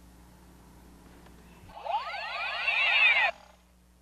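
A vehicle passing by: its noise swells up for about a second and a half, then cuts off abruptly.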